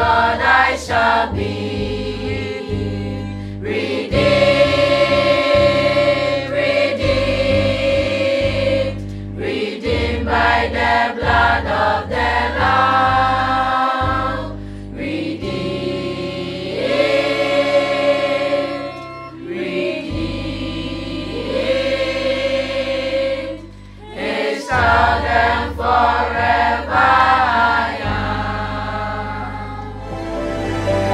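Children's choir singing a gospel song, several voices together, over a low sustained accompaniment that changes note every few seconds.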